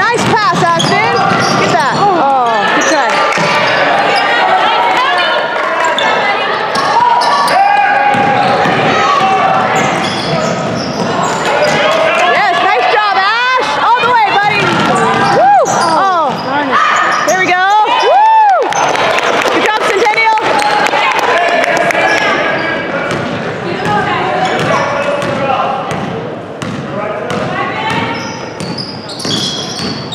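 Basketball game sounds in a large gym: the ball bouncing on the hardwood floor, shoes squeaking, and spectators' voices calling out throughout.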